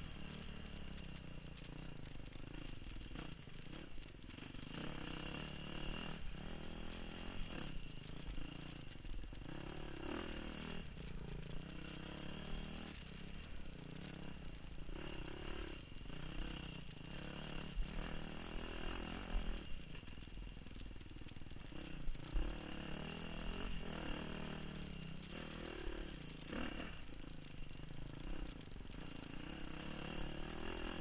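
Dirt bike engine revving up and down continuously as it is ridden along a trail, heard from the rider's position. There are a few sharp knocks along the way.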